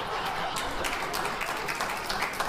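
Studio audience applauding: a steady wash of many hands clapping.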